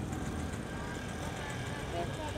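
Street ambience: a low, steady rumble of vehicles with faint voices in the background.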